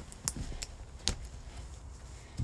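Three or four short, sharp clicks over a low rumble, the loudest about a second in.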